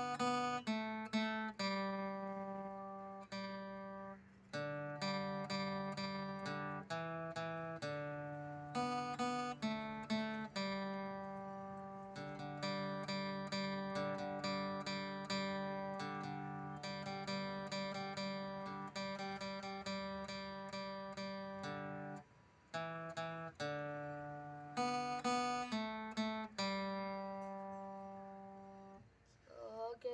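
Acoustic guitar played by hand: a tune of picked notes and strummed chords, each note ringing and fading, with short breaks about 22 seconds in and near the end.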